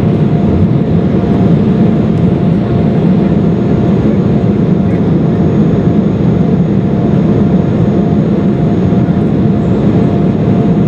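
Steady cabin noise inside an Embraer E-175 in flight: the drone of its GE CF34 turbofan engines mixed with rushing airflow, with a faint steady tone running through it.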